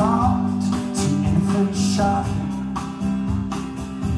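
Live rock band playing: an acoustic guitar is strummed over sustained bass notes, with a man singing at the start.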